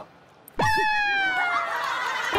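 Sound effect edited into a TV variety show: after a brief silence, a sudden held whistle-like tone starts about half a second in and slides slowly downward with a slight wobble for about a second and a half.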